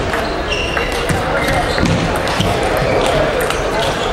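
Table tennis ball clicking off bats and table in a rally, a series of short sharp ticks over the steady voices and echo of a busy sports hall.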